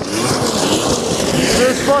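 Snowmobile engine running hard as the sled drifts across snow-covered ice, with heavy wind noise on the microphone. A man shouts near the end.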